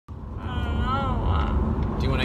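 Steady low road rumble inside a moving car's cabin. A woman's drawn-out, wavering vocal sound without words is held for about a second, starting about half a second in.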